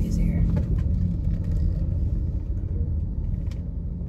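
Low, steady rumble of a car's engine and road noise heard inside the cabin while driving slowly, easing slightly in the second half. It is really loud, which the driver puts down to a door that may not be fully shut.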